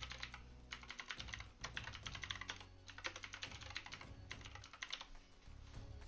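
Typing on a computer keyboard: rapid keystroke clicks in bursts, with short pauses between them.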